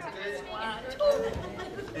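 Speech: voices talking, with background chatter.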